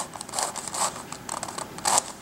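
Plastic pieces of a Crazy Radiolarian twisty puzzle clicking and scraping as a section is turned by hand: a quick run of short clicks, the last one, near the end, the loudest.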